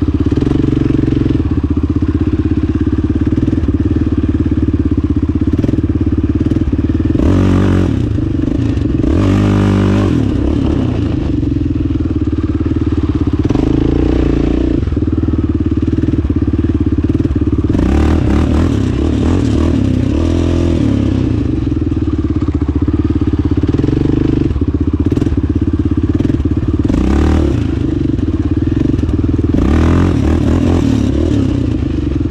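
Yamaha Raptor 700 quad's single-cylinder four-stroke engine running steadily as it is ridden over dirt. The revs rise and fall with the throttle, with several sharper surges along the way.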